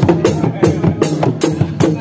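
Dogdog drums of a Sundanese reak ensemble, single-headed frame drums of several pitches beaten by hand in a fast interlocking rhythm, about four to five strokes a second, with a small cymbal struck with a stick cutting through on top.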